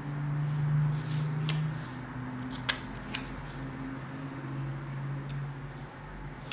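Paper and sticker-sheet handling, rustling with a few short crinkles as stickers are peeled and pressed onto planner pages. Under it runs a low hum that shifts in pitch a couple of times.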